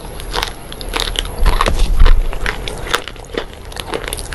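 Close-miked biting and chewing of hard, brittle white sticks: a fast, irregular run of sharp crunches and crackles, loudest about two seconds in.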